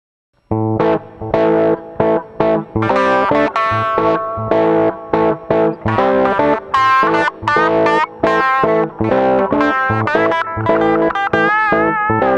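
Electric guitar played through the BLAXX BX-Drive B overdrive pedal, its tone lightly distorted. After half a second of silence it plays a choppy, stop-start riff of short chords and single notes, ending on a held note with vibrato.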